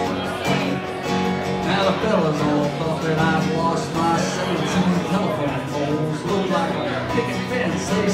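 Acoustic guitar strummed and picked in a fast country tune, with no singing.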